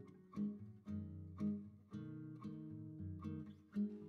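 Soft background music on acoustic guitar, notes picked every half second to second and left to ring.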